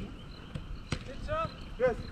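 Soccer ball being kicked on artificial turf: two sharp thuds less than half a second apart, about a second in, followed by players shouting.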